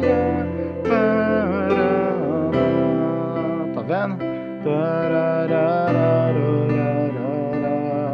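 Electronic keyboard playing a worship-song chord loop: held F, C and G/B chords over low bass notes, changing every few seconds. Above the chords, a melody line slides and wavers in pitch.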